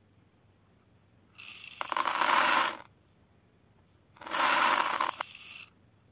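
Small plastic gem beads poured into a glass tumbler, clattering and tinkling against the glass in two pours of about a second and a half each.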